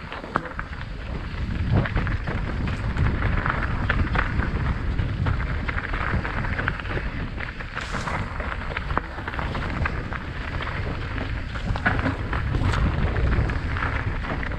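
Mountain bike descending rocky dirt singletrack, heard from a helmet camera: a continuous low rumble of wind buffeting the microphone and tyres rolling over dirt and stones, broken by many small clicks and rattles from the bike over the rough ground.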